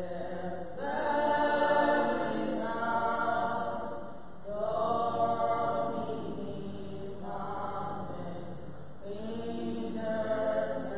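Voices singing a slow, chant-like church hymn in phrases of a few seconds, on long held notes with short breaks between phrases.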